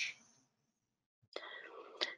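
A word ends right at the start, followed by about a second of near silence. Then, a little past halfway, comes a soft breathy, whisper-like voice sound as the next person draws breath to speak.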